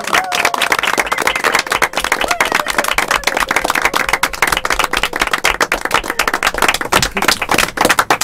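A small group of people applauding, many hands clapping quickly and unevenly, loud throughout.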